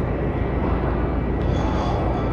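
Steady grocery-store background noise: an even rushing hum with a low rumble and no distinct events.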